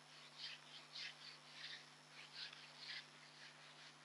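Whiteboard eraser rubbing across the whiteboard in short, faint swishing strokes, about two a second.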